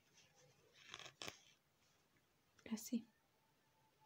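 Red yarn pulled through crocheted stitches with a yarn needle, a short scratchy draw about a second in, against near silence. A brief soft voice sound near the end.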